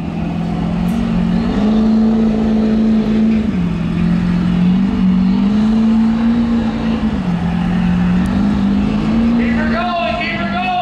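Pickup truck engine held at high revs during a burnout, its note rising and falling every second or two as the throttle is worked, with the tires spinning on the pavement.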